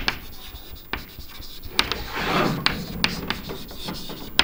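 Chalk writing on a chalkboard: scratchy strokes broken by a handful of sharp taps as the chalk strikes the board.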